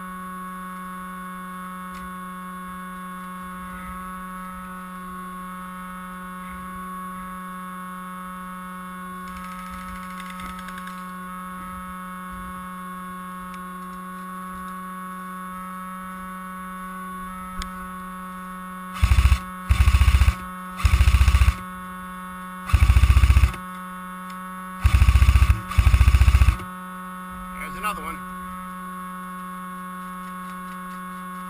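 An airsoft electric rifle fired in six short full-auto bursts, each under a second long, close to the microphone in the last third. A steady electrical hum runs underneath throughout.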